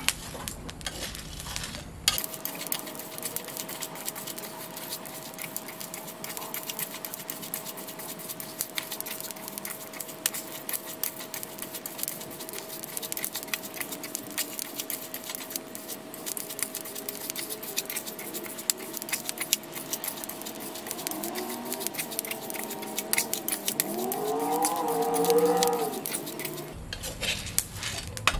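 A metal spatula stirs and scrapes coffee beans around a shallow metal pan as they roast over a propane burner, giving a dense run of small clicks and rattles. A faint steady tone runs under most of it, and near the end a short wavering whine rises and falls.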